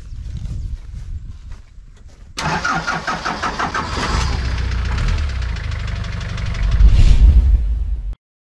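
Old Dodge pickup truck's engine being started: a couple of seconds of cranking, then it catches suddenly about two and a half seconds in and runs with a fast, even beat, growing louder near the end.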